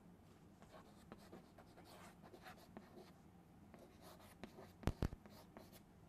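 Chalk scratching faintly on a blackboard as words are written by hand, with two sharp taps close together about five seconds in.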